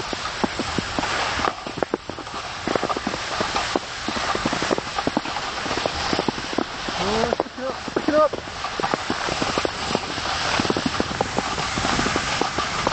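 Footsteps crunching through snow, with clothing rustling and rubbing against the microphone, in a dense run of irregular crunches. A short voice sound comes about seven to eight seconds in.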